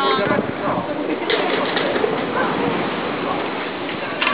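Rough sea surf and wind on the microphone make a steady rushing noise. A short voice or call comes at the very start, with fainter calls later.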